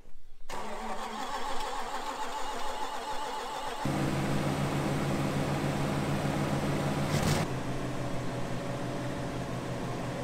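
The Chrysler 318 V8 in a 1984 Tucker Sno-Cat is cranked by its starter for about three seconds, then catches just before the four-second mark and settles into a steady idle. A short burst of louder noise comes near seven seconds.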